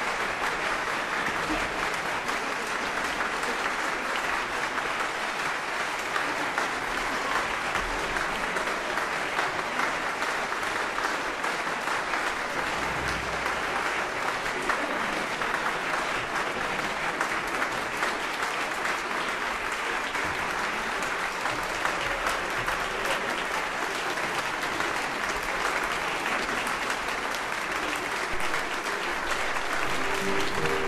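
Concert hall audience applauding steadily.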